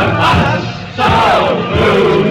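A group of men singing and shouting a chant-like radio jingle over a musical backing, with a short break a little before the middle and then a falling sung phrase.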